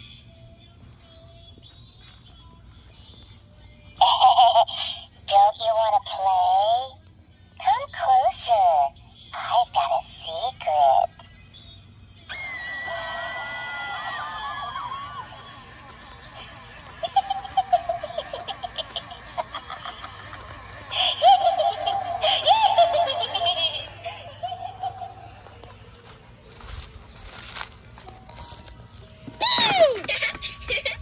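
Halloween animatronic's recorded soundtrack playing through its speaker: a run of short bursts of high-pitched, child-like giggling, then eerie voice and music.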